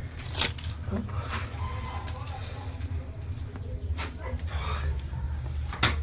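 Handling noise from a handheld phone being moved about over rock: a steady low rumble with a few scattered clicks and knocks.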